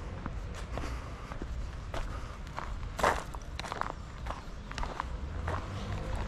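Footsteps of someone walking along a dirt path laid with stepping stones, irregular steps about two a second with one heavier step about halfway through, over a steady low rumble.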